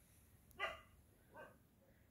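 Two faint, short dog barks a little under a second apart, over otherwise near-quiet surroundings.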